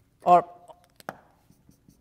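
Dry-erase marker on a whiteboard, a few short squeaking and tapping strokes as an area of a diagram is hatched in, with one sharper stroke about a second in.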